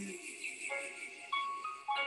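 Soft instrumental backing music of a slow worship song between sung lines: quiet held notes, with a new note coming in roughly every half second, just after a sung note with vibrato ends.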